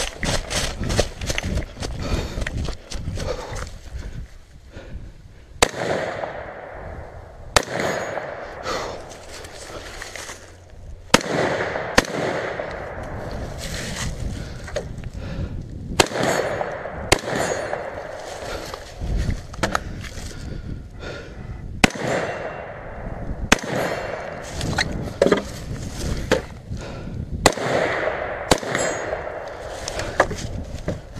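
AR-15 rifle in .223/5.56 firing, the shots mostly in pairs about a second apart, a pair every five seconds or so. Between the pairs comes a rustling, crunching haze of running through dry leaves.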